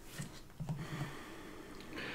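Quiet handling sounds of a small clear acrylic stamp block being set down and pressed onto a card panel: a few soft clicks, with a brief low murmur about half a second to a second in.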